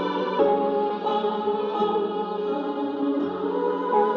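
Boom bap hip-hop instrumental built on a sample, in F-sharp minor at 85 BPM, with sustained chords that shift several times.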